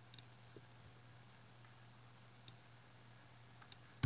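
Near silence with a few faint, isolated computer mouse clicks.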